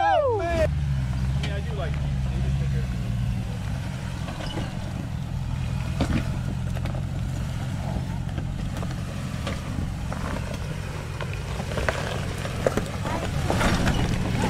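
Off-road truck engine running low and steady as it crawls up a steep climb of loose rock. A few sharp clicks of tyres on rock come later on.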